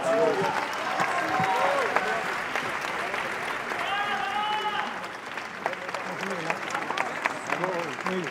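Large theatre audience applauding steadily, with voices calling out over the clapping.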